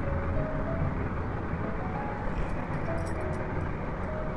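Steady background rumble and hiss with a faint tune of short held notes at changing pitches over it, and a few faint clicks partway through.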